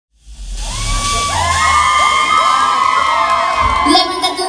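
Crowd cheering and shouting, with many high voices rising and falling at once; it comes in within the first half second.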